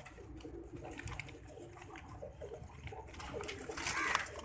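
Domestic pigeons cooing faintly, with a low background hum.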